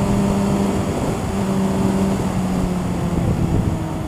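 Motorcycle engine running at a steady cruise, heard from the rider's seat with wind rushing over the microphone; the engine note dips slightly about halfway through.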